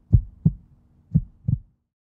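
Heartbeat sound effect: two pairs of low double thumps, lub-dub, about a second apart.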